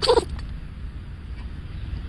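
Small white dog sneezing: a short sneeze right at the start, followed by a steady low rumble of wind on the phone recording.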